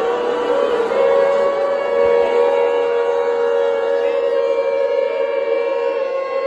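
Music with voices holding a long, steady chord; a second close pitch joins about a second in.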